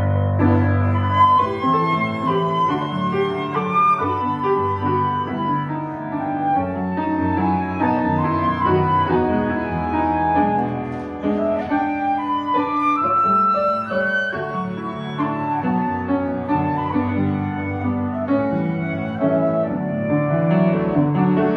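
Concert flute and upright piano playing a classical duet: the flute carries a sustained melody over a continuous piano accompaniment.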